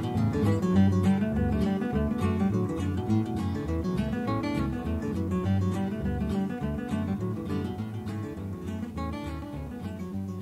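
Strummed acoustic guitar playing the instrumental ending of a country song, with no singing, gradually getting quieter as it fades out.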